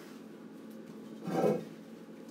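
Electric pottery wheel running with a steady low motor hum. A brief noisy swish comes about one and a half seconds in.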